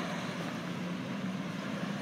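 Tractor-trailer semi truck driving slowly through an intersection, its engine a steady low hum under even road noise.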